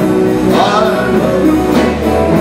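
Country-style band music with a singer, the voice gliding in pitch about half a second in.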